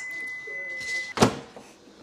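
Microwave oven beeping: one steady high tone that stops a little after a second in, followed by a sharp click as the microwave door is opened.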